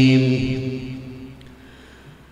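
A man's melodic Quran recitation (tajwid) holding a long, steady final note closing the basmala, which fades away over the first second. A quiet pause follows before the next verse begins.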